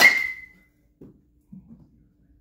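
A baseball bat striking a pitched ball: a sharp metallic ping that rings for about half a second, typical of an aluminium bat. Two faint, dull knocks follow about a second and a second and a half later.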